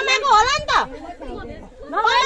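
Only speech: several people talking over one another, dying down in the second half.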